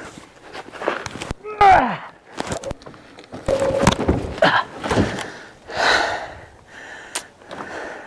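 A man grunting and breathing hard with effort as he heaves a heavy hardwood log up onto a pickup truck bed. Scattered knocks and scrapes come from the log and its bark catching on the truck.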